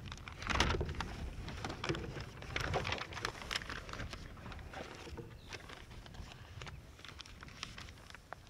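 Outdoor microphone picking up a constant low wind rumble, with irregular rustling and light knocks that are loudest in the first few seconds and fade toward the end.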